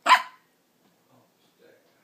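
A four-month-old Yorkshire terrier puppy giving a single short, sharp bark right at the start.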